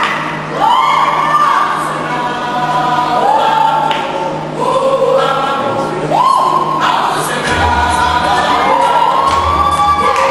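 Recorded song with sung vocal lines and held, sliding notes, played over a hall's loudspeakers for a dance. A low bass comes in about seven and a half seconds in.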